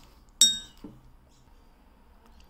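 A glass mug clinks once, about half a second in, with a short bright ring, followed by a soft knock.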